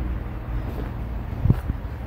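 A low, steady rumble with wind on the microphone, and one soft thump about one and a half seconds in.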